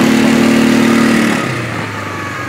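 Off-road vehicle engine running under throttle, then easing off about one and a half seconds in, its note dropping lower and quieter.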